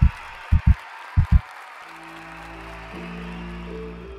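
Background music and edit effects: low thumps in pairs, about three pairs over the first second and a half, under a fading hiss. From about two seconds in, calm ambient music with sustained chords takes over.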